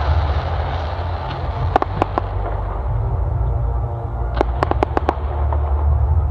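Fireworks display with a continuous deep rumble of shell bursts. There are sharp cracks, three of them about two seconds in and a quick cluster between four and five seconds.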